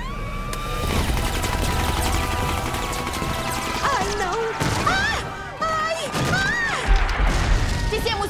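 Cartoon sound effects of rapid machine-gun fire from fighter aircraft, a fast run of shots with booming impacts, over dramatic music. A woman's voice yelps in alarm in the second half.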